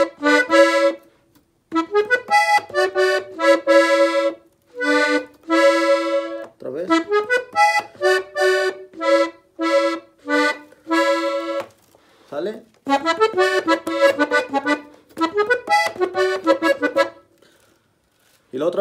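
Piano accordion playing a melody on its treble keys, mostly two notes at a time in thirds and sixths, in short ornamented phrases separated by brief pauses.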